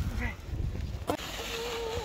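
Plastic sled sliding over snow, with wind rumbling on the microphone. Then, after a sharp click, a person's voice holds one steady note for about a second.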